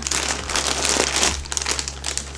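Clear plastic bag crinkling as it is handled and pulled open to get a wig out of it.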